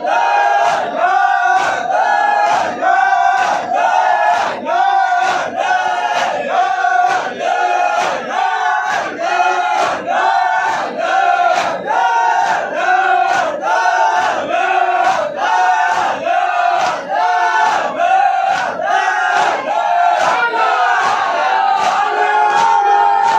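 A large group of men chanting a nauha (Shia lament) together, with hand-slaps on the chest (matam) keeping a steady beat about once a second.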